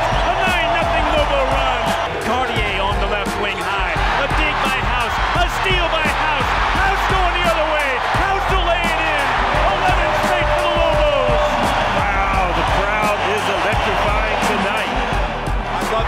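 Basketball arena game sound: a loud crowd cheering, with sneakers squeaking on the hardwood court and the ball bouncing.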